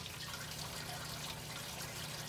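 Steady, quiet trickle of water falling down inside a Tower Garden aeroponic tower, where its pump lifts the nutrient solution to the top and it drains back down.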